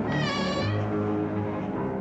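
Tense horror-film score: a short, high, wavering cry in the first second gives way to a low, sustained drone.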